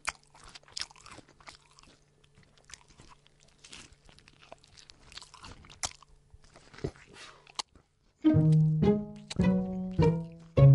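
Irregular crunching like something being chewed, for about seven and a half seconds over a faint steady hum. About eight seconds in, loud plucked string music starts.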